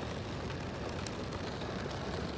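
Steady hiss of rain and of car tyres on a wet street, heard from inside a car through its rain-spotted glass.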